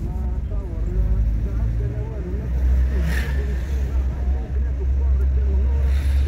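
Steady low rumble of a car driving, heard from inside the moving car, with a voice talking over it and a brief hiss about three seconds in.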